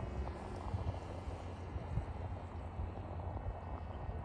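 Titan Cobra VTOL RC plane in forward flight: a faint, thin motor-and-propeller whine that fades as it flies off into the distance, under a low wind rumble on the microphone.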